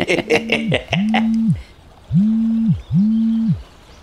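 A mobile phone vibrating with an incoming call: four low, even buzzes of about half a second each, in two pairs. A few short sharp sounds come over the first buzz in the first second.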